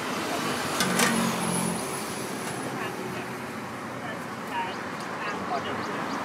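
Steady roadside traffic noise with faint background voices, and a few sharp metallic clicks about a second in from steel serving pots and lids being handled.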